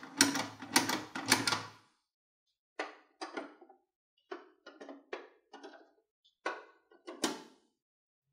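Hard plastic clicking and clacking on a toy garage: a quick run of clacks in the first two seconds, then a string of separate plastic clacks as its hinged doors are snapped shut one after another.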